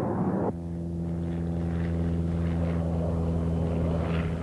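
Steady, even drone of an aircraft engine. About half a second in, a dense burst of battle noise cuts off.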